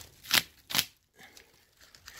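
Plastic stretch wrap crinkling in two short bursts as it is handled.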